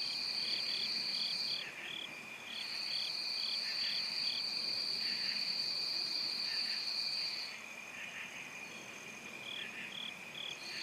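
A chorus of trilling insects: one high, steady trill stops about a second and a half in, resumes about a second later, and cuts off again about three-quarters of the way through. Under it runs a fainter, lower steady trill, with runs of short chirps at about three a second early on and again near the end.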